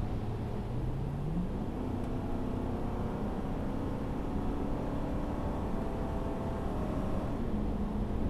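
Car driving at highway speed, heard from inside the cabin: steady road and engine noise. The engine hum rises in pitch over about half a second, a second or so in, holds at the higher pitch, then drops back near the end.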